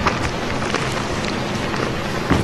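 Steady running noise of a passenger train, heard from inside the carriage, with a few short clicks and rattles scattered through it.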